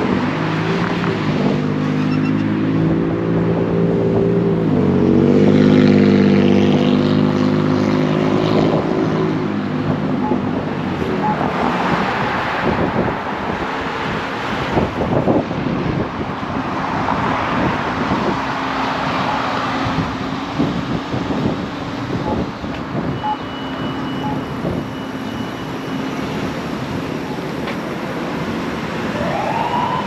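Road traffic: a heavy vehicle's engine note rises and falls, loudest about six seconds in, then fades into the steady noise of cars passing. A rising whine starts right at the end.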